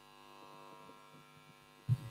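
Faint, steady electrical hum from the sound system during a pause in speech, with a brief low bump near the end.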